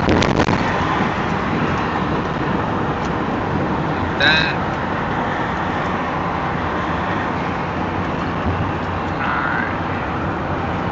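Steady road and engine noise inside the cab of an RV driving at highway speed.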